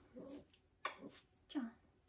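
A small dog whimpering faintly a few times, short falling cries, while it is picked up and held.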